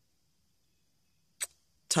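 A pause in speech, near silence, broken by one short, sharp sound about a second and a half in; speech resumes right at the end.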